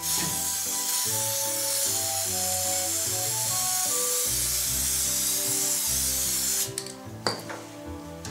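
Aerosol spray paint can hissing steadily as brown paint is sprayed onto the surface of water in a tray, cutting off about six and a half seconds in.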